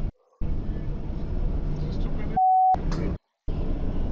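Dash-cam audio of a car driving at about 30 mph: steady road and engine noise inside the cabin, with a driver's voice partly cut out. The sound drops to silence twice, and a single steady censor bleep sounds briefly about two and a half seconds in.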